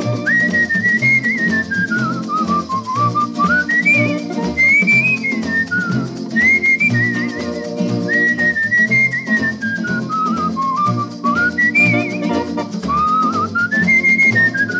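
Instrumental break of a 1951 samba record: a whistled melody gliding up and down in long phrases over guitar, rattling percussion and a steady bass pulse.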